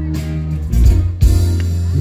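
Live pop-soul band playing amplified in a concert hall: electric guitars over steady bass notes and a drum beat.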